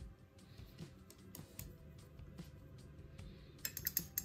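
Quiet background music, with scattered soft clicks and a quick run of clinks near the end as a paintbrush knocks against the rim of a small metal paint-water tin.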